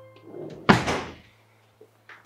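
A wooden interior door shut with a single sharp slam about two-thirds of a second in. A low, sustained background music note runs under it and fades soon after.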